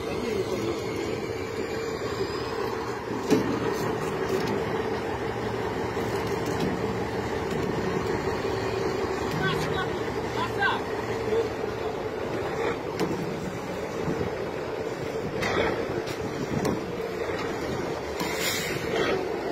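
A motor engine running steadily, with a sharp knock about three seconds in.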